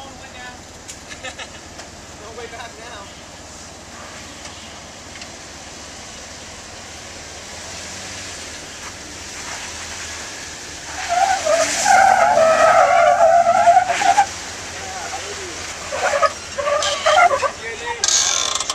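Jeep Wrangler Rubicon crawling up sandstone slickrock with its engine faint under the noise. About eleven seconds in, a loud wavering squeal lasts about three seconds, typical of tires scrubbing and slipping on the bare rock.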